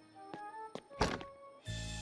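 Soft cartoon score of a few short plucked notes, with a changing-cubicle door shutting in a single thunk about a second in. A low steady drone begins near the end.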